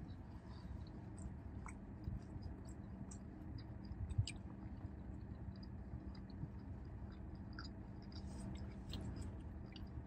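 Faint, close chewing of a mouthful of burger, with small wet mouth clicks now and then, over a low steady hum.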